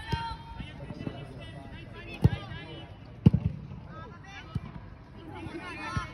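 A football kicked hard twice, two sharp thuds about a second apart, amid shouting voices of players on the pitch.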